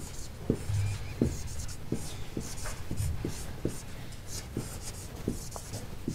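Marker writing on a whiteboard: a quick run of short scratchy strokes and taps as an equation is written out.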